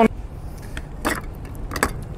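A few scattered clinks of ice cubes against a metal scoop as ice is gathered for a cocktail shaker, over a low steady outdoor rumble.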